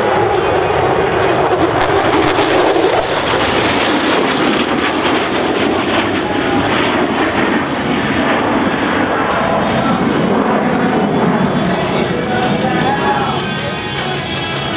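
F-16 Fighting Falcon jet engine at high power as the fighter flies a display pass, a loud steady rush of jet noise that is strongest in the first few seconds and eases slightly toward the end.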